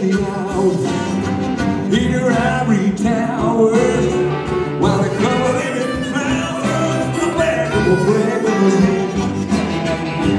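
Electric blues band playing live, electric guitars and drums carrying an instrumental passage with a lead line bending in pitch over it.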